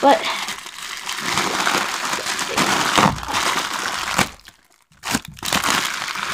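Plastic mailing bag crinkling and rustling as it is pulled and torn at by hand, with a few sharp crackles. The rustling stops for about half a second around four and a half seconds in, then starts again.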